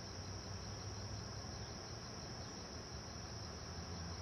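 Crickets singing in one steady, high-pitched drone, with a faint low rumble beneath.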